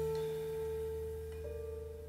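Tenor saxophone holding a long final note that slowly fades away over dying low accompaniment, the end of a slow instrumental piece. A faint new note comes in about a second and a half in.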